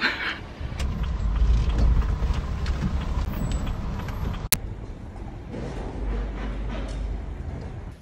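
Moving van's engine and road noise heard from inside the cab: a steady low rumble. It briefly cuts out with a sharp click about halfway through.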